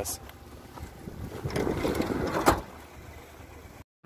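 Low outdoor rumble of wind on the microphone, swelling about halfway through, with one sharp click about two and a half seconds in. The sound cuts off abruptly just before the end.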